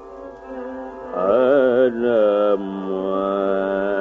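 Carnatic classical music in raga Shubhapantuvarali: a melodic line over a steady drone. The line starts soft, swells about a second in with wavering, gliding ornaments (gamakas), then settles on a held note.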